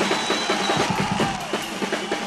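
Live rock drum kit played in fast rolls, with rapid tom and snare strokes over bass drum and cymbals.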